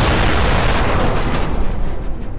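Explosion sound effect: a loud blast with a dense roar that holds, then starts to die away near the end.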